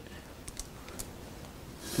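Faint handling sounds of wooden workpieces: a few light clicks and taps as hands pick up and shift a glued-up octagonal assembly of wood segments on a paper-covered bench.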